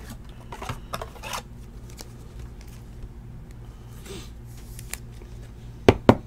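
Trading cards being handled and a card slid into a plastic toploader: faint clicks, rustles and scrapes over a low steady hum, then a sharp knock near the end.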